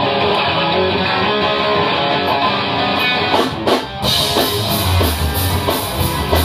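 Rock band playing live: an electric guitar plays ringing chords, then after a few drum hits the full band comes in with drums and bass about four seconds in.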